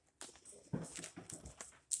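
People standing up from wooden church pews: a run of irregular knocks and shuffles with rustling.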